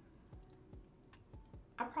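Faint, scattered small clicks and a few soft low taps as a lipstick is worked over the lips. A woman's voice starts just before the end.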